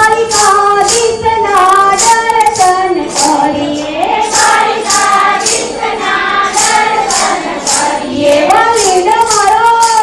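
Voices singing a Hindu devotional bhajan in a melodic, held-note line, with a steady percussive tick about twice a second keeping the beat.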